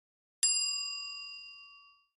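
A single bell-like ding sound effect, struck about half a second in. Its several clear tones ring out and fade over about a second and a half.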